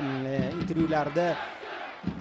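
A man's voice talking in drawn-out, held tones for about the first second and a half, then trailing off, over a stadium crowd's background noise.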